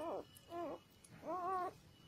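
Newborn puppy crying: three short, high-pitched whimpers in quick succession, each rising and then falling in pitch.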